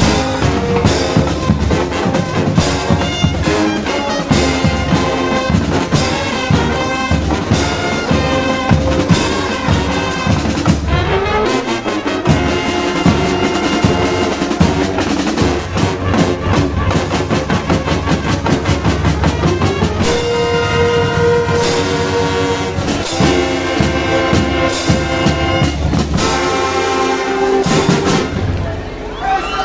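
Brazilian marching band (banda marcial) playing loud: trumpets, trombones and sousaphones over marching drums. In the later part the brass holds long sustained chords, and the music breaks off at the very end.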